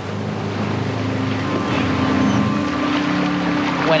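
Small engine running steadily, its note rising partway through.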